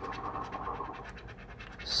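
Scratching the coating off a scratch-off lottery ticket: rapid short scraping strokes over the card.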